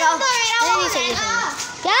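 Children's high voices talking and calling out, at times two at once.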